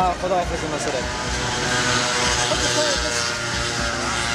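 A motor vehicle passing on a wet road: a steady engine hum under a tyre hiss that swells around the middle and eases off. A voice trails off at the very start.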